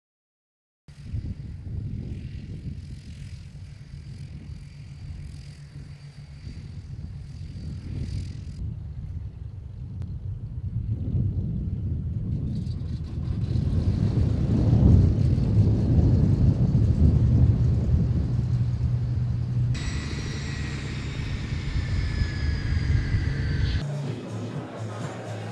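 Cessna 208 Caravan's turboprop engine running with a deep, steady rumble that grows louder toward the middle. Near the end, a high whine slowly falls in pitch.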